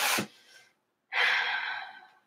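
A person's breathy exhale, a short sigh of breath lasting under a second and fading away, about a second in, with a brief breath sound at the very start.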